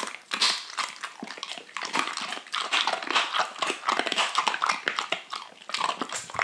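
Dogs crunching and chewing hard, crunchy Crumps dental sticks: a steady run of irregular crisp cracks as the sticks break between their teeth.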